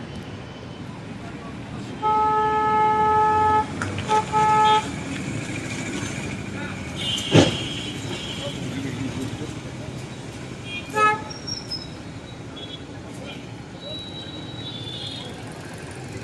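Vehicle horns honking in street traffic over the steady noise of passing vehicles. One long honk comes about two seconds in, followed by two short toots, a sharp knock about seven seconds in, and another short beep around eleven seconds.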